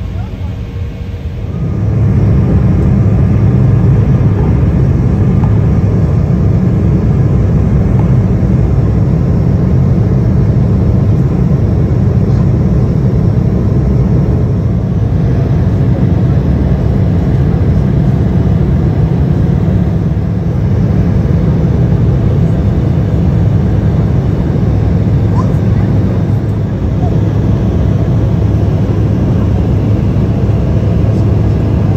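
Cabin noise of an Embraer E175 at takeoff and climb power: the steady rumble of its two GE CF34-8E turbofan engines with rushing air, stepping up sharply about two seconds in and then holding steady.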